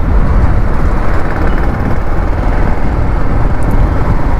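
Wind rushing and buffeting over the microphone of a rider on a moving 100 cc motorcycle, mixed with the engine's low running sound and road noise. It is a steady, dense rumble with no clear engine note standing out.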